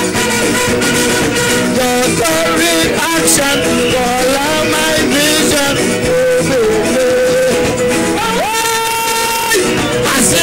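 Live calypso song: a male lead singer over a full band with drums, the singing moving throughout, with a long held note near the end.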